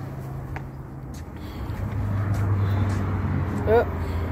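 Outdoor street ambience: a steady low rumble of vehicle traffic that grows louder about halfway through, with faint clicks and a brief vocal sound near the end.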